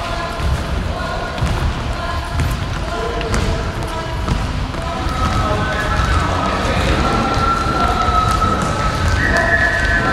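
Several dancers' shoes stepping and shuffling on a wooden sports-hall floor, with a tune carried over the steps, its held notes stronger in the second half.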